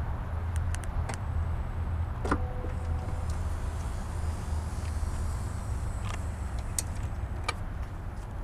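Power sliding door of a 2008 Chrysler Town & Country opening on its motor: a steady low hum with a few clicks near the start as it unlatches, a brief tone a little over two seconds in, and a couple of clicks near the end as it reaches the open position.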